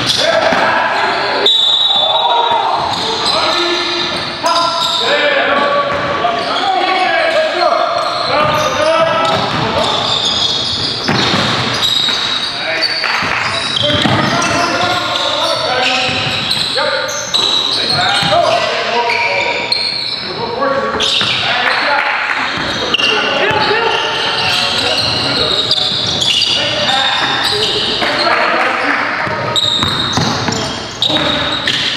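Basketball game in a gymnasium: a ball bouncing on the hardwood floor as players dribble, with voices throughout and the echo of a large hall.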